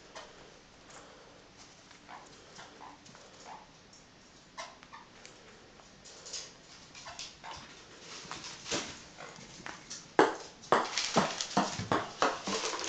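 Caique parrot playing with a ping pong ball: faint scattered taps and clicks of the light plastic ball being nudged about. Near the end comes a quick run of loud sharp knocks, the ball bouncing on the hard wooden floor.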